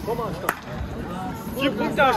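A single sharp smack, like a slap or a hand clap, about half a second in, with shouted voices echoing in a large hall around it.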